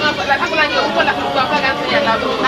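Several people's voices talking over one another at once, a loud, dense chatter.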